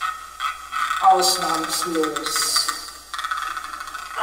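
A woman's voice vocalizing in drawn-out sounds with gliding pitch, without clear words, for about two seconds starting about a second in. Hissing, crackly noise comes before and after it.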